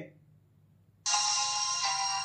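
Music starting abruptly about a second in, after play is tapped on a smartwatch's music player, coming through the Fire-Boltt Ninja Talk calling smartwatch's small built-in speaker.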